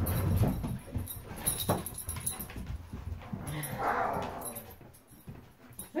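German Shepherds moving about close to the microphone: shuffling and scuffling, with scattered light clicks and a short breathy dog sound about four seconds in, growing quieter toward the end.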